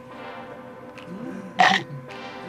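Background music, with one short, loud vocal sound from a person about one and a half seconds in.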